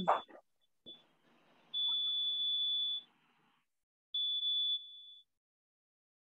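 A steady, high-pitched electronic beep sounds for a little over a second, then a second, shorter beep follows about a second later. A throat is cleared at the start.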